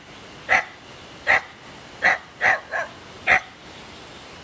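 A dog barking: six short, sharp barks, roughly evenly spaced, with two coming close together just past the middle.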